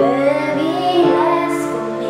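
A woman singing a slow worship song, her voice gliding between notes, over sustained chords on an upright piano.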